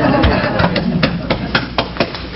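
Hands patting a back during a hug: about five sharp pats in an even rhythm, some four a second, through the second half, after a short laugh at the start.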